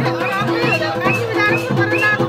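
Festive folk music with a quick, steady drum beat and held drone-like tones, under loud chatter and children's voices from a crowd.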